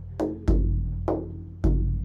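Large hand-played frame drum keeping the Egyptian Zaar rhythm: two deep, ringing doom strokes about a second apart, with lighter, sharper ka and tek strokes between them.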